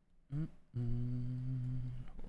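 A man humming with his mouth closed: a short rising note, then one low note held for about a second.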